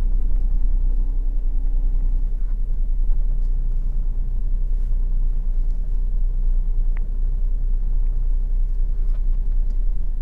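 Car engine running low and steady, heard from inside the cabin as the car reverses slowly during a parallel park.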